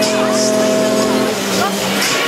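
Fairground ride soundscape at a running Hully Gully ride: a steady, held pitched tone stops abruptly a little over a second in, over a background of voices and the ride's music.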